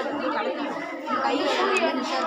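Overlapping chatter of many young voices talking at once.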